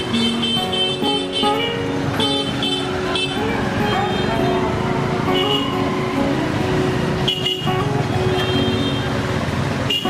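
Busy street traffic with vehicle horns honking over and over, mixed with background music and voices.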